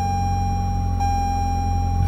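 The Camry's Entune infotainment unit playing its startup sound: a steady electronic tone with overtones, sounded afresh about a second in. A low steady hum runs underneath it.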